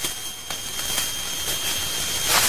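Harsh static hiss with a thin, steady high whine running through it, cutting in suddenly and staying steady with a few faint clicks. It is the camera-distortion effect that marks Slenderman's presence in found-footage clips.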